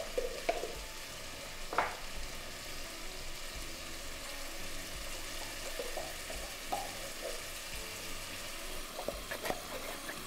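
Steady gentle sizzling of minced beef, onion and stock cooking in a Dutch oven on a gas hob, with a few short soft scrapes and plops as baked beans are pushed out of tins with a wooden spoon and drop into the pot.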